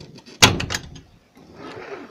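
Hinged vent window of a polycarbonate greenhouse being worked by hand: one sharp clack of its metal frame and latch, with a brief rattle right after, then a softer rustle near the end.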